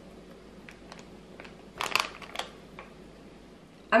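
Plastic bag of crumbled feta crinkling in a short cluster about two seconds in as the cheese is pinched out and sprinkled over a bowl of lettuce, with a few faint ticks before it.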